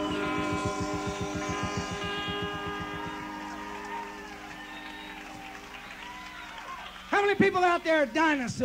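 A live rock band's final chord ringing out and fading over about three seconds, then a quieter stretch of crowd noise; near the end, loud whooping yells with falling pitch.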